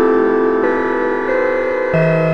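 Dark ambient music: layered sustained tones held steady, with the chord shifting to new notes about every two-thirds of a second.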